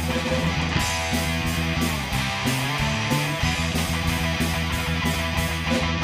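Live rock band playing an instrumental stretch: electric guitars, bass guitar and drum kit, with a steady beat carried on the cymbals.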